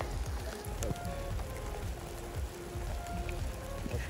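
Steady rain falling on the cars and wet paving, with background music of held notes.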